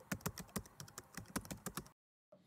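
Typing sound effect: quick, uneven keystroke clicks, about seven a second, that stop abruptly just before the end.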